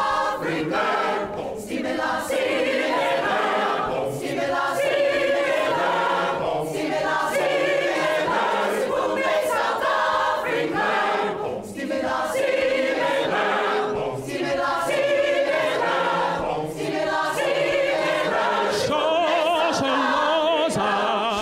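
Mixed-voice choir singing a cappella in phrases of a few seconds, with short breaks for breath between them. Near the end a male soloist's voice comes in over the choir.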